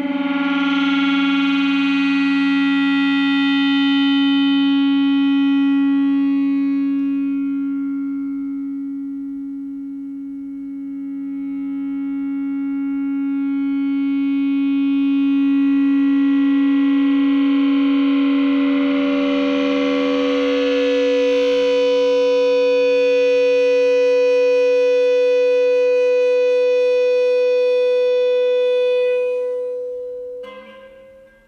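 Prepared electric guitar sustained by an EBow: one long droning, gong-like inharmonic tone, made by a 3D-printed ring that couples the 3rd and 5th strings. The tone swells, sinks about a third of the way in, then swells back brighter. About two-thirds in, a higher overtone takes over as the EBow moves between the string's strong harmonics, and the tone fades away right at the end.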